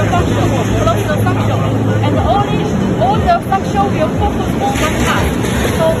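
Crowd chatter in a busy exhibition hall, with overlapping voices over a noisy background and a steady low hum that stops about two seconds in.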